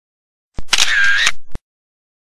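Camera shutter sound effect: a sharp click, about a second of whirring, and a closing click.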